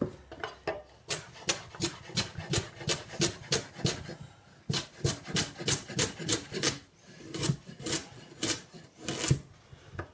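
Kitchen knife chopping carrots on a wooden chopping board, quick regular strokes about four a second, with two short pauses.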